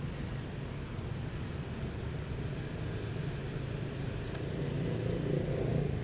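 A steady low machine hum runs underneath, with a few faint ticks and rustles of fingers working loose potting soil around a plant's base.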